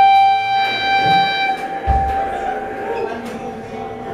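Electric guitar feedback through an amplifier: one steady, ringing high tone with overtones, held for about three seconds and then fading out. A couple of low thumps from the stage come through under it.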